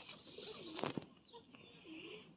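Feral pigeons cooing softly: a low, wavering coo about half a second in and another near the end. A brief rustling noise comes just before the first second.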